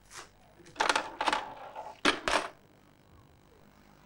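Coins dropping into a lifeboat charity collection box, clinking and rattling inside it in three short bursts, the middle one the longest.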